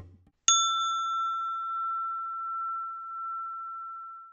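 A single struck bell-like chime about half a second in: one clear high tone with fainter higher overtones, ringing on and slowly fading for several seconds. Just before it, a percussion-backed music intro trails off.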